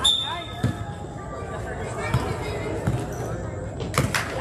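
A basketball being dribbled on a gym floor, a low thump every half second to a second, with a sharper hit at the end. Shoes squeak on the court near the start.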